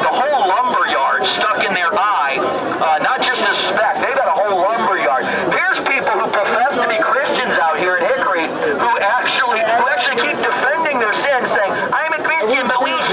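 Speech: a man preaching through a handheld microphone and horn loudspeaker, with other voices from the crowd around him.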